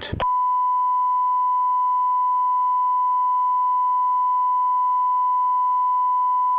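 Broadcast line-up test tone on a suspended feed: a single steady, pure high-pitched tone that starts a moment in and holds at an even level.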